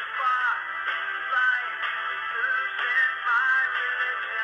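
Sagem myC2-3 mobile phone playing one of its built-in polyphonic ringtones through its loudspeaker: a synthesised melody with sliding notes over sustained chords.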